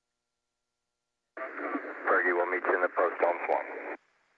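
Silence, then about a second and a half in a voice comes over a narrow, tinny radio channel (shuttle air-to-ground voice loop) and cuts off abruptly near the end.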